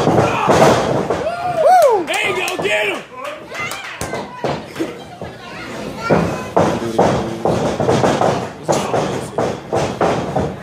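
Spectators shouting 'No! No!' with a high, drawn-out yell about two seconds in, then repeated thuds of wrestlers' bodies and feet hitting the wrestling ring's canvas floor amid crowd voices.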